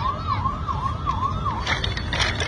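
A siren, its single tone sliding up and down about two and a half times a second, stopping shortly before the end.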